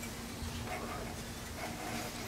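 Quiet, steady background noise with a faint low hum; no distinct mechanical sound stands out.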